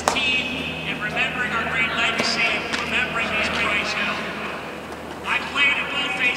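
A man's voice over a stadium public-address system, distant and echoing so the words cannot be made out, over a steady low hum.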